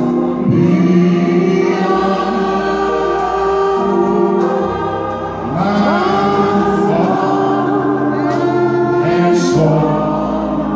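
Gospel singing by a group of voices, slow and drawn out, with held chords and voices sliding up into notes over a steady low accompaniment.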